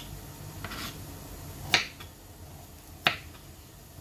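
Two short, sharp clicks about a second and a half apart, over a quiet room background.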